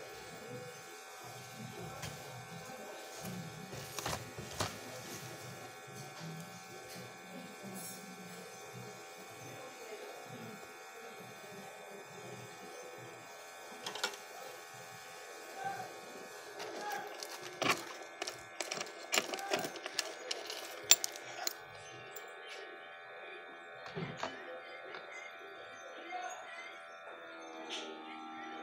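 A steady, multi-tone electrical hum runs throughout under faint background voices. A cluster of small sharp clicks comes about two-thirds of the way through.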